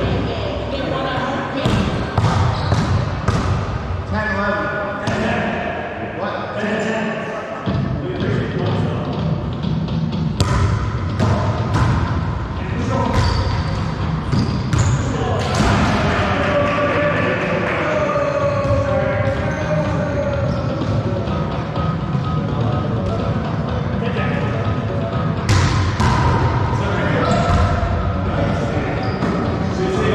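A wallyball game: a rubber ball repeatedly struck by hands and bouncing off the walls and wooden floor of an enclosed racquetball court, giving many sharp thuds, mixed with players' voices calling out.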